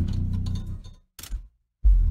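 A 21-inch Dayton Audio subwoofer driver, cone exposed in an open-backed wooden box, playing very deep bass hard, with a light rattle on top. The bass cuts out about a second in, a short burst follows, and the deep bass comes back strongly near the end.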